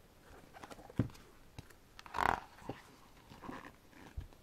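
Stiff, glossy pages of a large photobook album being turned by hand: a sharp thump about a second in, then a louder paper flap a little after two seconds, with lighter rustling around them.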